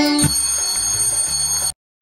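Background music giving way to a high, steady bell-like chime effect that rings for about a second and a half, then cuts off into a moment of silence near the end.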